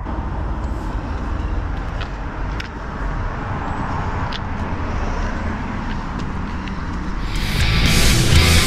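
Steady low rumbling noise of wind buffeting the camera microphone, with a few faint clicks. Rock music with guitars comes in about seven seconds in.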